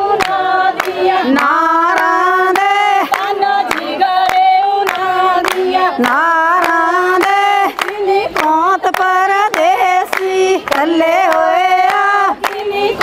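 Women's voices singing a Punjabi folk song in long held, gliding notes over a steady beat of group hand-clapping, the clapping that keeps time for giddha dancing.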